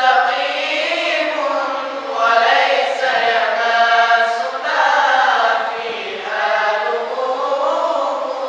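Quran recitation (qirat) chanted by a group of male voices together, a lead reciter with young men joining. It moves in several long melodic phrases with ornamented, gliding held notes and brief breaths between them.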